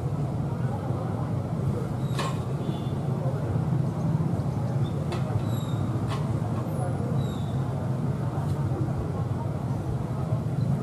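Diesel-electric locomotive engine running with a steady low drone as the locomotive moves slowly forward, with a few faint clicks and short high chirps over it.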